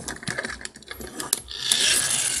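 Plastic toy parts clicking as the toy is handled, then, about one and a half seconds in, a steady gear whir from the toy's friction motor as it is pushed along the table.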